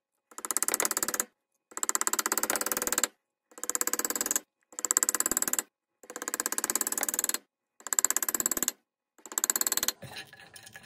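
Claw hammer tapping steel staples into a wooden block over wire rope, heard as a rapid rattle of taps in about seven bursts of roughly a second each, separated by abrupt silent gaps.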